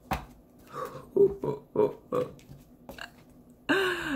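A woman's brief wordless vocal sounds: a few short hummed syllables, then a louder 'ooh' falling in pitch near the end. Faint clicks from handling cards come at the start.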